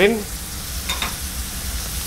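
Cardoon mushrooms, ham and pepper sizzling steadily in a frying pan as the mushrooms cook off their water, with two faint ticks about a second in.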